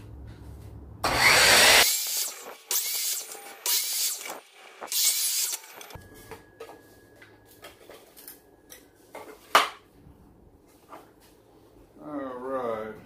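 Bauer 10-inch sliding compound miter saw running and cutting through a test board: a loud burst lasting about a second, then three shorter bursts, followed by quiet handling of the cut-off strip and a single sharp knock near the end.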